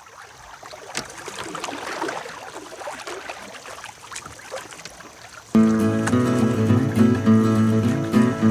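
Canoe paddle strokes and water sounds, fairly quiet, then background music starts suddenly about five and a half seconds in and is much louder.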